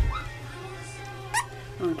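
A bump of handling noise at the start, then a single short, high squeak rising sharply in pitch about a second and a half in from a five-week-old sheepadoodle puppy, over a steady low hum.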